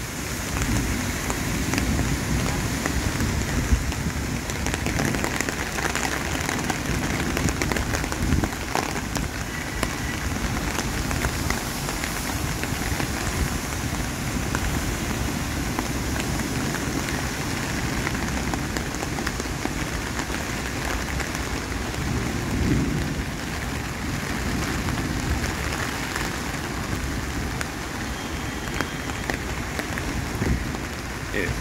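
Heavy rain falling steadily in a downpour, a continuous hiss with a low rumble underneath.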